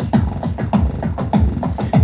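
Korg Electribe EMX-1 drum machine playing an electronic drum pattern. Kicks that drop in pitch, about two to three a second, alternate with short clicky hits, all driven through the unit's vacuum-tube distortion for an analog-style warmth.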